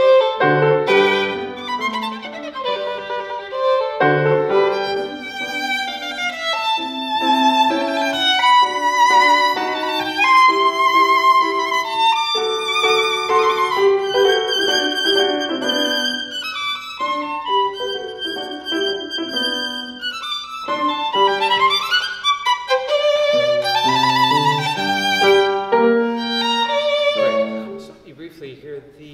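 Solo violin playing a lyrical classical passage with vibrato, accompanied by piano. The playing stops just before the end.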